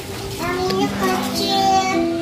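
A child singing in long held notes, with no clear words.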